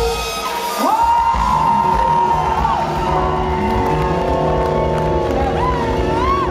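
Live soul band closing a song: a held horn chord cuts off, then a long high note glides up and is held for about four seconds over drums and bass while the audience cheers and whoops.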